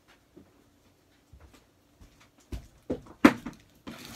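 Scattered light ticks, then several sharp knocks and thumps in a small room, growing louder in the last second and a half, the loudest just after three seconds in.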